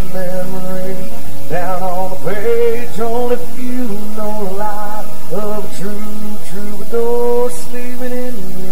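Live acoustic music: two acoustic guitars playing with a man singing the melody over them, the sound loud and even.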